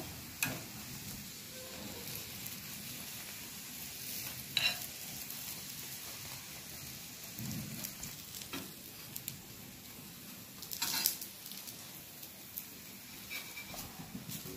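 A paratha frying in ghee on a tawa gives a steady sizzle. A steel spoon scrapes and taps against the griddle several times as the ghee is spread over it.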